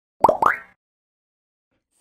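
Cartoon-style logo sound effect: two quick plops, about a fifth of a second apart, each rising in pitch.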